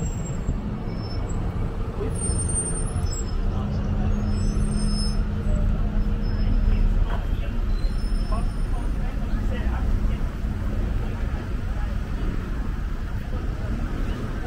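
Road traffic on a busy street: car and van engines running and passing, a steady low rumble that grows louder through the middle.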